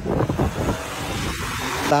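A car pulling away quickly: a rising rush of engine and road noise that grows louder over the last second or so, after a brief bit of voice at the start.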